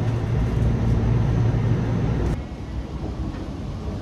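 Train carriage interior: a steady low rumble and hum of the train. About two and a half seconds in it drops suddenly to a quieter, even background noise.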